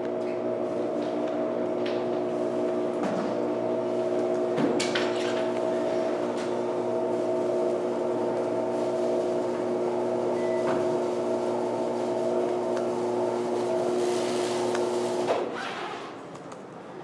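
A steady mechanical hum made of several fixed tones, with a few faint clicks, that cuts off suddenly near the end.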